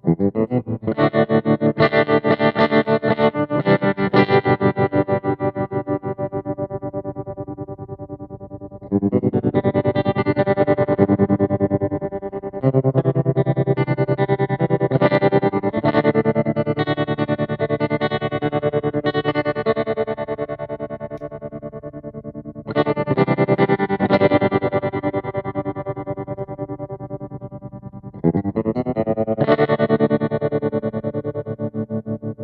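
Electric guitar played through a 1974 Fender Vibro Champ tube amp: a handful of chords struck and left to ring out, each fading before the next is played.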